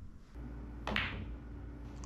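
Cue tip striking the cue ball once, a short click about a second in, over a low steady hum.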